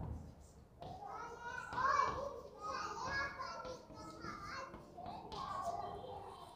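Faint children's voices in the background, high-pitched chatter and calls that begin about a second in and go on with short pauses.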